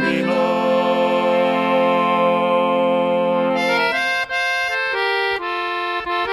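Instrumental break of a maritime folk ballad played on a squeezebox: a long chord held for about three and a half seconds, then a melody in short, separate notes.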